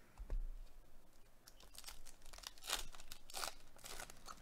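Foil wrapper of a baseball card pack being torn open and handled, a scattered run of faint crinkles and tearing rustles.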